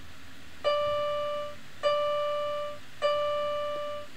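A single keyboard-like musical note, the same pitch each time, sounded three times a little over a second apart, each ringing for about a second and fading.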